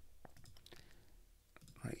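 Several faint, sharp computer mouse clicks, unevenly spaced.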